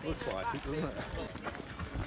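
Voices of people talking in the background, indistinct, over a low outdoor rumble.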